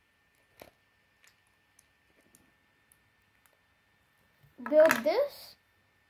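Faint, scattered clicks of plastic Lego bricks being handled and pressed together. Near the end comes a brief, louder voiced sound with a wavering pitch, a short vocal noise rather than words.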